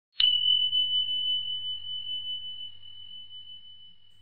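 A small bell struck once, its single clear high tone ringing on and slowly fading away.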